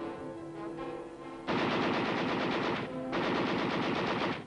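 Battle sound effects of automatic gunfire over orchestral film score. The music's held chords carry the first second and a half. Then a long, rapid burst of machine-gun fire starts and lasts to the end.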